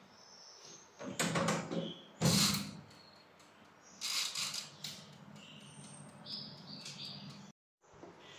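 Countertop electric oven being shut and set: a few short knocks and clatters, the loudest about two seconds in as its metal-framed glass door closes, another about four seconds in as the timer dial is turned.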